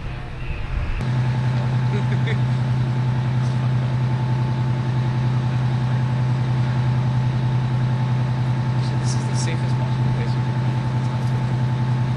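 Idling vehicle engine, a steady low hum that starts abruptly about a second in and holds even, over faint street noise.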